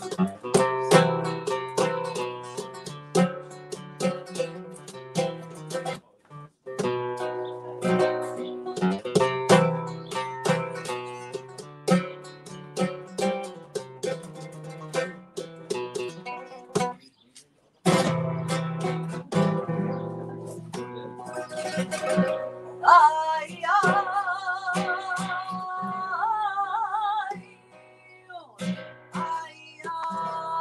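Solo flamenco guitar played live, fast plucked runs and chords with two short breaks. About three-quarters of the way in, a woman's voice comes in over the guitar, singing a flamenco line with a wavering vibrato; it drops away briefly and then resumes near the end.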